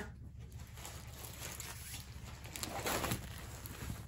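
Faint rustling of diamond-painting canvases being handled, strongest about three seconds in, over a low steady hum.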